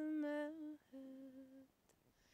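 A woman's voice holding a long, steady sung note that ends under a second in, followed by a lower, quieter held note that stops shortly before the end.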